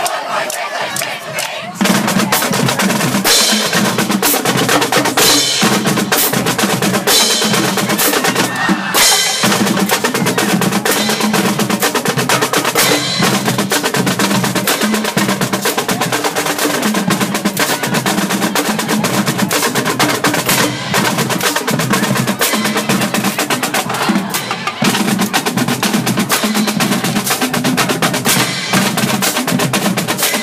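High school marching drumline playing a cadence on snare and bass drums, starting about two seconds in after a brief shout.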